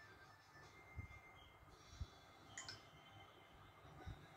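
Near silence: quiet room tone with two faint low thumps, about one and two seconds in, and a brief faint click a little later.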